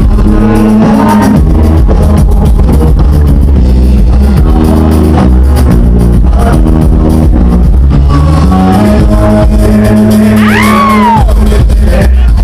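Amplified live band playing dance music, with a deep steady bass and held chords. Near the end a short high tone rises and then falls away.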